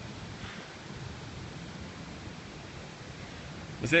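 Steady outdoor background noise, an even hiss with no distinct events, picked up by a phone microphone; a man's voice begins right at the end.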